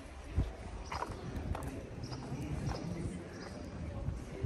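Footsteps on stone paving, about two steps a second, each a short sharp scuff or tap, over faint background voices.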